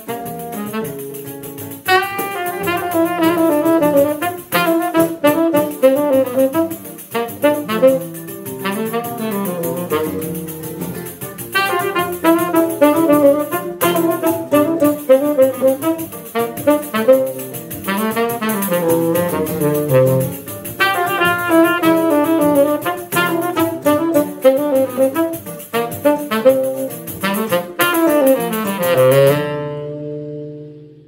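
Live Brazilian choro played by saxophone, nylon-string seven-string guitar and pandeiro, with the saxophone carrying a quick melody over guitar bass runs and the pandeiro's jingling beat. Near the end the piece closes on held final notes that die away.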